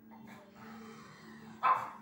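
A pug barks once, a short sharp bark near the end, over a faint steady hum.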